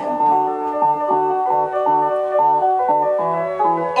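Electronic synthesizer music with no vocals: a bright organ-like keyboard melody stepping from note to note over short repeated bass notes, about three a second.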